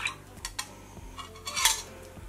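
A metal teaspoon clinking against a drinking glass as powder is stirred into water, the clinks thinning out within the first second. A brief noisy sound comes about one and a half seconds in.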